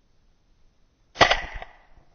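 A single shot from an IWI Tavor rifle firing a .223 round, a sharp crack about a second in that rings out briefly.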